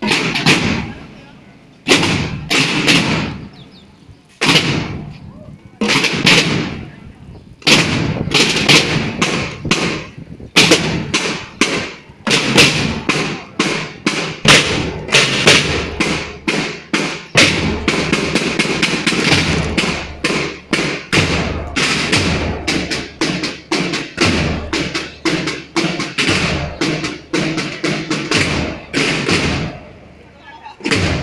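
Procession drums beating, rope-tensioned side drums with a bass drum. At first single heavy strokes come about every two seconds, then from about eight seconds in the drumming turns fast and continuous.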